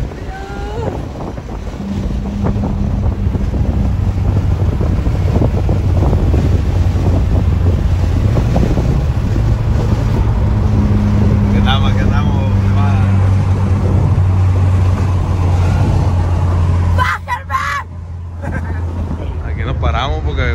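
Volkswagen Golf GTI engine heard from inside the cabin at highway speed: a steady drone with wind and road noise. It cuts off suddenly about seventeen seconds in, and quieter sound with voices follows.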